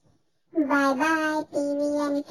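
A high singing voice holding long, steady notes, starting about half a second in after a brief silence.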